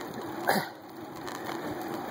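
The rider gives one short cough or throat-clear about half a second in. It sits over the steady hiss of a bicycle climbing a paved road, picked up by a handlebar-mounted phone.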